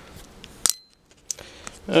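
A sharp click with a short metallic ring about two thirds of a second in, followed by a brief dropout and a few small clicks.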